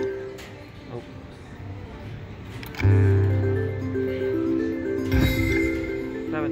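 Aztec Treasure slot machine playing its electronic chime tune of stepping, mallet-like notes while the reels spin. About three seconds in a louder low tone starts under the tune, and there is a sharp knock near the end.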